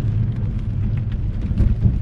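Steady low road and engine rumble inside a moving car's cabin, with faint tyre hiss from the wet road, swelling briefly near the end.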